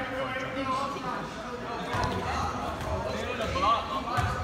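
Basketball bouncing on an indoor gym floor, a couple of dull thumps, under the steady chatter of players and spectators in the hall.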